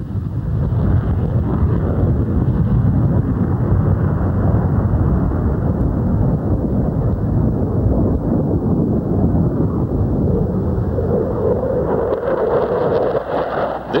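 F-15 Eagle's twin Pratt & Whitney F100 engines at full afterburner during a takeoff and steep climb-out: a loud, steady, deep rumble. A mid-pitched note comes up over the rumble near the end.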